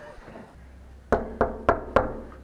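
Four quick knocks on a hotel room door, evenly spaced at about three a second, in the second half.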